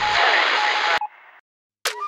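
A burst of static hiss, a glitch sound effect, lasting about a second and cutting off suddenly. A short silence follows, then a sharp click near the end.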